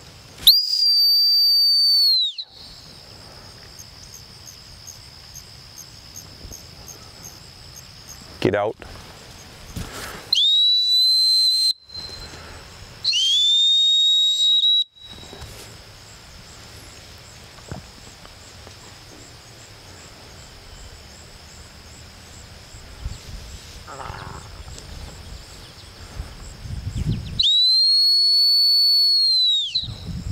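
Four long, steady blasts on a gun-dog training whistle, each one to two seconds long with the pitch sliding up at the start and down at the end: stop signals to a retriever working out in the field. Faint insect chirping carries on between the blasts.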